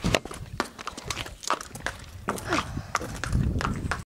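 A pony's hooves stepping on brick paving, with irregular knocks and scrapes close to the microphone.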